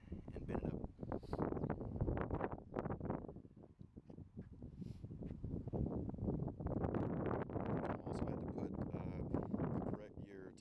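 Wind buffeting the microphone in irregular gusts, with a lull about midway.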